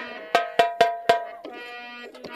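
Bell-like metal percussion struck four times in quick succession, each stroke ringing briefly, as part of the troupe's stage music. A held musical note takes over at about one and a half seconds in.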